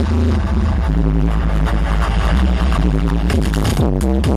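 Loud electronic dance music from a DJ set over a club sound system: sustained bass and synth chords with the drum beat dropped out, the beat coming back right at the end.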